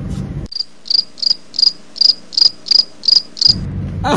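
Cricket chirping sound effect edited in, replacing the café sound for about three seconds: about nine short, evenly spaced high chirps, the comic 'crickets' cue for an awkward silence.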